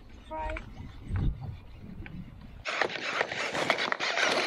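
Wind rumbling on the microphone with a short vocal sound, then from about two and a half seconds in a steady hiss with fine crackle as a baitcasting reel is cranked to bring in a hooked largemouth bass.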